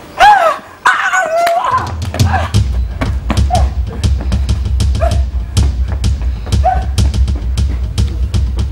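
A dog yelps and barks loudly twice, then music with a heavy, steady drum beat comes in about two seconds in, with short yelps over it.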